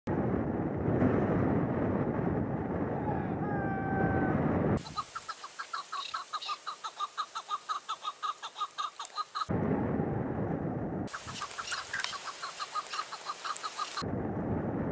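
Heavy wind buffeting the microphone with a few faint whistled notes, then a chukar partridge calling in a fast, even series of short clucks, about six a second; the wind cuts back in briefly before the clucking series resumes.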